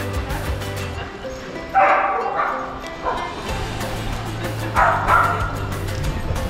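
A dog barking in two short bouts, about two seconds in and again about five seconds in, over background music.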